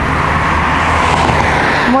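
Road traffic noise from a car passing on the road alongside, a steady rush of tyre and engine noise.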